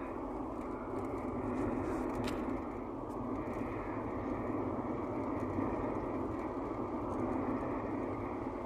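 Steady road and engine noise of a car driving along, heard from inside the cabin. It is an even rumble with tyre hiss that neither rises nor falls.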